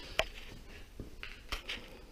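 A few faint, sharp clicks, about three in two seconds, over quiet room tone.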